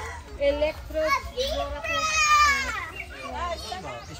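Children's voices calling out and shrieking in short, high-pitched calls. The loudest is a long, high call about two seconds in.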